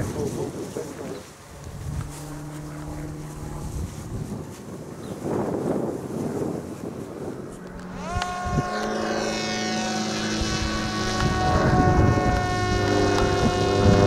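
Electric motor and propeller of a Parrot Disco fixed-wing drone spinning up sharply about eight seconds in as it is hand-launched, then a steady high whine with many overtones, easing slightly lower in pitch as the drone climbs away. Wind buffets the microphone before the launch.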